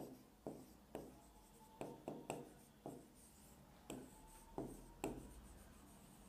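Stylus pen writing on the glass of an interactive touchscreen board: faint, irregular short taps and scrapes, about ten of them, as the letters are drawn.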